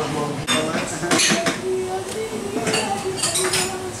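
Dishes, glasses and cutlery clinking and clattering in a bar kitchen, a few sharp clinks in short clusters, with people talking in the background.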